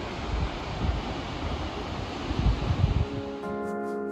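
Wind gusting on the microphone over a steady rushing noise, then soft background music with held notes comes in near the end.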